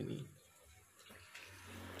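Near silence with faint background noise, and a low rumble that builds over the last half second.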